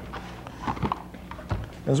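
Handling noise as power bars and their cardboard boxes are picked up and moved: a few light, irregular knocks and clatters over a low steady hum.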